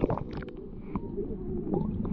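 Muffled underwater sound picked up by a submerged camera: a low rumble of moving water with scattered sharp clicks and crackles.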